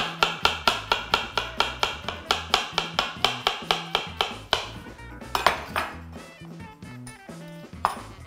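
Kitchen knife chopping a banana on a wooden cutting board: a quick, even run of knocks, about six a second, that stops after about four and a half seconds, followed later by a couple of single knocks.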